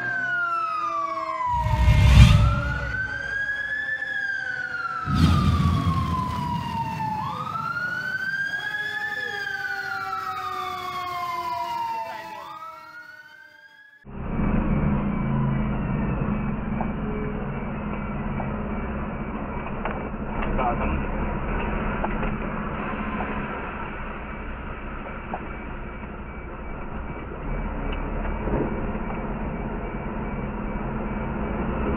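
A siren wails in slow up-and-down sweeps, with two heavy booms in the first few seconds, and fades out about halfway. Then steady engine and road noise from inside a moving Rosenbauer fire truck, picked up by its dashcam, with no siren.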